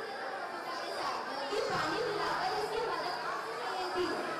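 Several voices chattering over one another, with no single clear speaker.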